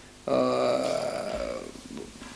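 An elderly man's drawn-out hesitation sound, a held 'ehh' that starts a moment in and trails off over about a second and a half.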